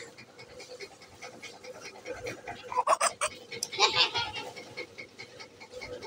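A baby's short, breathy vocal sounds, two brief bursts about halfway through, over low rustling and faint clicks of the phone being handled.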